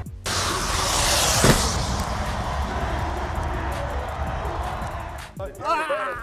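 Large stadium crowd cheering as one continuous wash of noise over music, loudest about a second in and then slowly easing. Near the end it gives way to men's voices.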